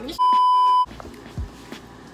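A single edited-in censor bleep: one pure, steady, loud beep lasting about two-thirds of a second, with the other audio muted beneath it. After it only faint background noise with a soft thump or two remains.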